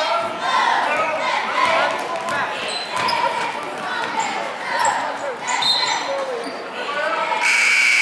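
Basketball game in a gym: sneakers squeak on the hardwood court as players run, amid shouting from players and spectators and the ball bouncing. A steady high whistle sounds near the end, as a referee's whistle stops play.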